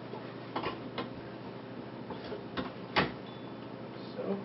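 Handling clicks and knocks as a star diagonal is fitted into the back of a small refractor telescope. There are about five small knocks, the sharpest about three seconds in.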